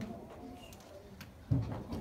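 A brief low hum of a person's voice about one and a half seconds in, over faint murmuring.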